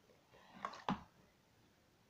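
A brief rustle followed by a sharp click or knock, a little under a second in: crafting materials and tools being handled on a cutting mat.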